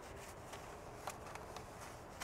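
Faint scrubbing of a microfiber wheel brush worked back and forth inside a soapy wheel barrel and between the spokes, with a few light clicks.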